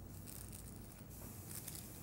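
Faint handling of aluminium highlighting foil as it is folded and pressed down, over a low steady room hum.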